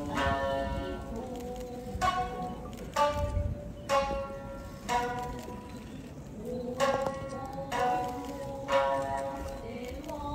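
Traditional Japanese dance accompaniment: a shamisen plucked in sharp notes every second or two, with a singer holding long notes that slide in pitch.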